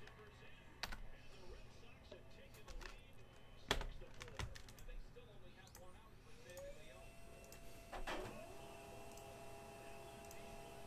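Faint mouse and keyboard clicks, the loudest a little under four seconds in. About six and a half seconds in, a rising whine settles into a steady hum, and a second steady tone joins a couple of seconds later: a Samsung M2020 laser printer starting up to print.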